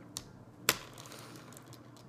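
A finger flicking the plastic Bean Boozled spinner: one sharp click, with a fainter tick just before it.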